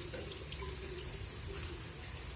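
A steady, faint hiss of falling or running water, even throughout.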